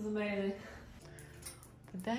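A woman's brief voiced sound, held on one pitch for about half a second, then quiet room tone with a faint low hum.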